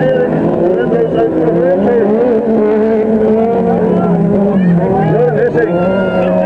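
Autocross car running hard on a dirt track, its engine note rising and falling with the throttle.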